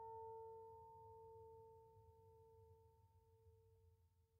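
The last plucked pipa note of a piece ringing out: one faint low tone with a weaker overtone above it, slowly fading away.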